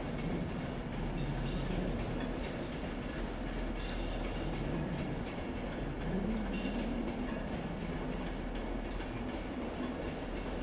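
A Virgin passenger train rolling slowly past: a steady rumble with a wavering low tone, and a few brief high clicks and squeals from the wheels on the rails, about four seconds in and again a little before seven seconds.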